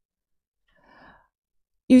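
A short, soft breath from a woman holding a handheld microphone about a second in, with near silence around it; she starts speaking again just before the end.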